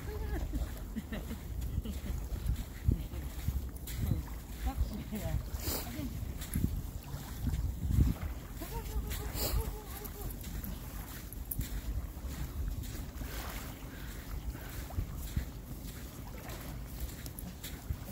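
Wind buffeting a phone's microphone outdoors, a low, uneven rumble that rises and falls.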